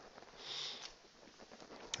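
A short sniff through the nose, about half a second in, over quiet room tone.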